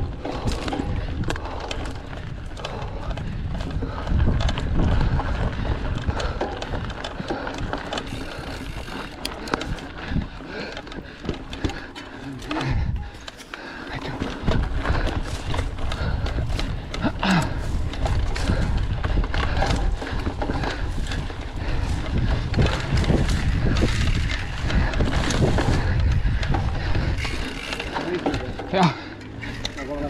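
Mountain bike ridden over a bumpy dirt singletrack: wind buffeting the microphone, tyre noise and frequent rattles and knocks from the bike, with a brief lull about halfway through.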